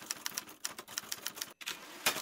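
Chalk writing on a homemade chalkboard, a cutting board painted with gritty chalkboard paint: a quick run of chalk taps and scratches, with a brief break about one and a half seconds in.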